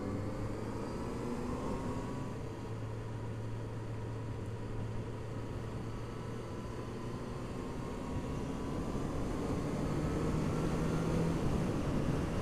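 Honda CB650F's inline-four engine running at road speed on a winding highway, under a steady rush of wind and road noise. Its note rises gently in the first couple of seconds, holds steady, then settles on a higher note and gets a little louder near the end.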